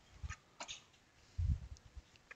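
A few faint clicks, then a single dull low thump about a second and a half in, as a bench microscope is swung and set into position over the work.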